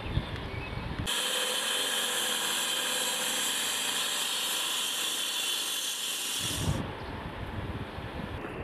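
Angle grinder cutting through a concrete paving block: a steady, high-pitched grinding whine that starts about a second in and stops abruptly near seven seconds. Wind rumble on the microphone before and after the cut.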